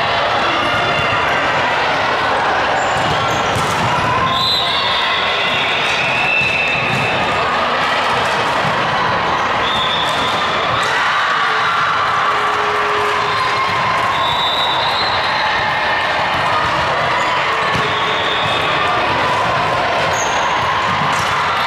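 Steady din of a busy volleyball gym, echoing in the large hall: volleyballs struck and bouncing on the hardwood floor, with scattered sharp hits, short high squeaks and a background of voices.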